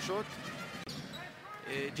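Basketball arena ambience from a game broadcast: crowd noise and court sounds, with a brief sharp dropout about a second in.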